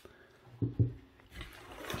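Two soft knocks as an 18-volt battery pack is set down on a table, then a rising rustle of the plastic tool being lifted out of its cardboard box.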